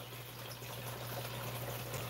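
Faint steady running water from an aquarium, its filter or bubbling keeping the water moving, over a low steady hum.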